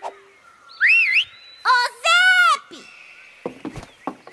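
Cartoon whistled calls: a quick rising-and-falling whistle about a second in, then a longer arching call with a rich tone at around two seconds.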